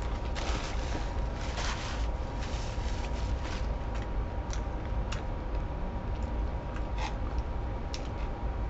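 A man chewing a mouthful of chicken Big Mac with a crispy breaded patty: irregular small crunches and clicks, with a paper napkin wiped over the mouth at the start.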